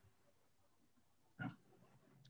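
Near silence: room tone of an online meeting, broken by one brief short sound about one and a half seconds in.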